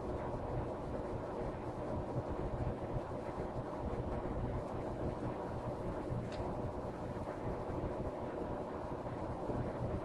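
Steady low background rumble and hiss, with one faint tick about six seconds in.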